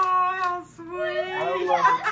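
A girl crying in two long, drawn-out, high-pitched wails, tears of joy.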